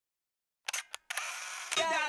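Silence, then three sharp clicks in quick succession, followed by a steady hiss, with a voice starting near the end.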